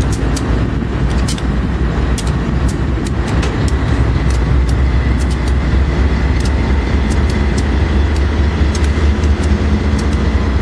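Several Union Pacific diesel-electric locomotives passing at close range: a deep, steady engine rumble that grows louder about four seconds in, with a faint high whine and scattered sharp ticks over it.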